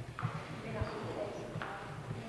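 Indistinct murmur of several people talking in a large room, with two short sharp taps.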